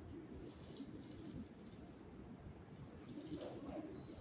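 Faint, low cooing of pigeons over quiet station ambience.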